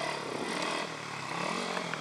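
Pit bike engines running as the bikes ride a dirt track, the buzzing pitch rising and falling as the riders work the throttle.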